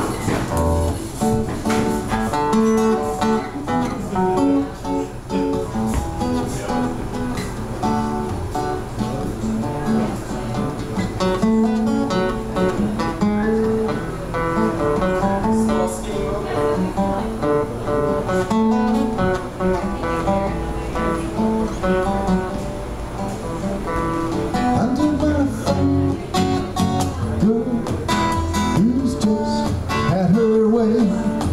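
Solo acoustic guitar playing an instrumental passage of picked notes and strummed chords.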